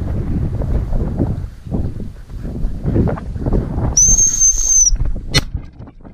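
Wind buffeting the microphone with rustling through grass, then about four seconds in a single steady, high-pitched gundog whistle blast lasting just under a second, followed shortly by a sharp click.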